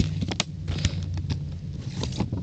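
Clear plastic blister packaging being handled, giving a scatter of small clicks and crinkles, over a faint steady low hum.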